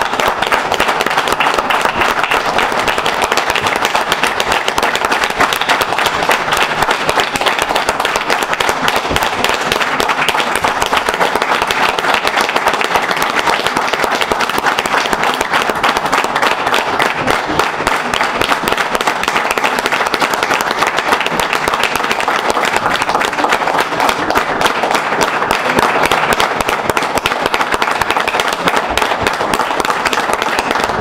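A room of people applauding, with dense clapping that keeps going at an even, loud level.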